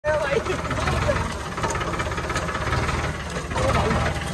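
A farm tractor's diesel engine running steadily under way, a low rumble with fast regular firing pulses. A voice is heard briefly near the start and again near the end.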